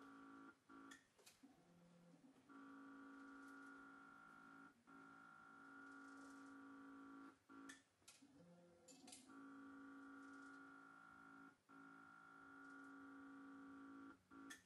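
Near silence: a faint steady hum with a few faint clicks.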